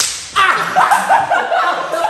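A sharp slap as a hand strikes a person's head, followed by loud, high-pitched voice sounds.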